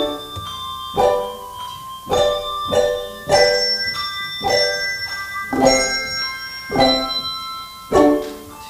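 Handbell choir playing: chords of several bells struck together about once a second, each left to ring on and fade.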